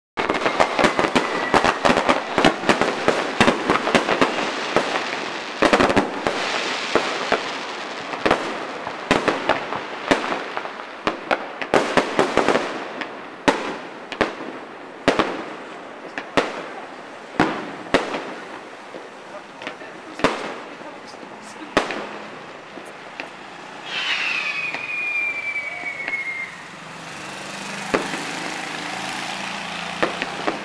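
Fireworks display heard from a distance: a dense volley of sharp bangs and crackles from exploding shells, thinning about halfway through to single bangs every second or two.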